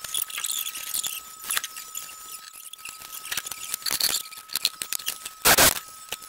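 Sped-up time-lapse sound of work on a furnace: a rapid run of clicks, taps and chirpy squeaks over a thin steady high tone, with one loud clatter about five and a half seconds in.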